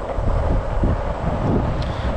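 Longboard wheels rolling over an asphalt path, a steady low rumble, with wind buffeting the microphone.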